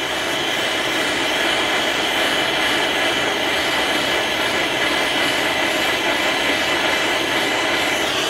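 MAPP gas hand torch burning with a steady hiss, its flame held on a spot of a steel AK receiver to temper it.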